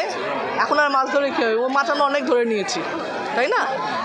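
Speech: a woman talking into press microphones, with other voices chattering around her.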